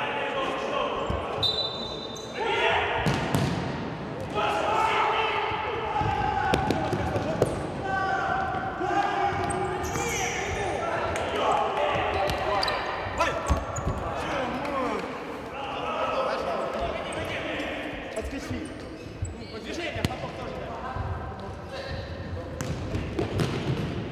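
Futsal players shouting to each other in a large echoing sports hall, with the ball being kicked and bouncing on the hard court floor.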